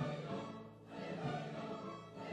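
Large mixed church choir, with men's and women's voices together, singing in sustained phrases. The sound eases off briefly just before a second in.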